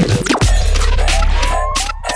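Bass-heavy electronic dance music in a DJ mix. A fast downward pitch sweep comes a fraction of a second in, then a long, deep sustained bass note plays under a slowly rising synth tone, and the bass drops out near the end.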